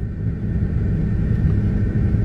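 Steady low rumble of a car heard from inside the cabin, with no other sound rising above it.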